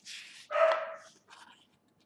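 A book page turning with a papery rustle, then a dog barks once, short and high, about half a second in.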